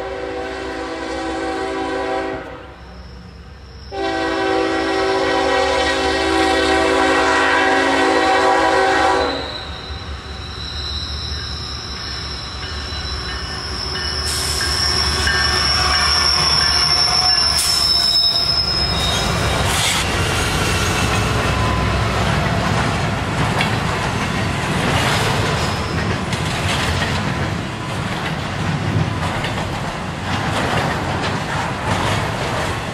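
Norfolk Southern freight train's diesel locomotive horn sounding two long blasts, the second from about four to nine seconds in. The lead diesel locomotives then rumble past with a high, steady squeal in the middle, followed by the rolling clatter of the intermodal cars.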